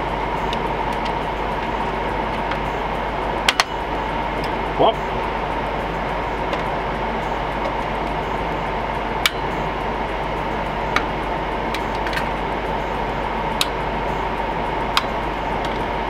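Steady whir of cooling fans with a constant hum, broken by a few sharp clicks of metal parts being handled inside an opened rack server as its CPU heat sinks are lifted out.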